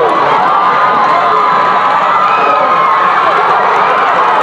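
Football stadium crowd cheering and yelling, many voices overlapping in a steady, loud din as a punt return plays out.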